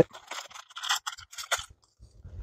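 An MRE accessory packet's brown plastic pouch being torn open by hand: intermittent crinkling and short scratchy rips of the packaging.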